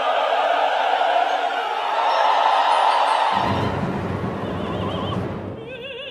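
Live opera music: a dense orchestral and choral sound that gives way, about three seconds in, to a deep low rumble in the orchestra. Near the end a mezzo-soprano's voice enters with wide vibrato.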